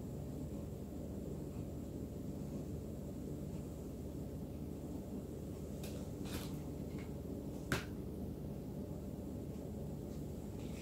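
A steady low hum, with a few light scrapes and clicks from a small spatula dipping into a plastic tub of chocolate ganache about two-thirds of the way through, the last one a single sharp click.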